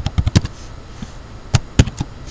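Computer keyboard keystrokes: a quick run of clacks at the start, then two more about a second and a half in.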